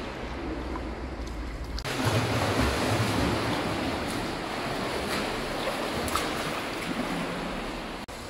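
Steady splashing of a swimmer doing front crawl through pool water, starting and growing fuller about two seconds in, after a short stretch of quieter pool-side noise.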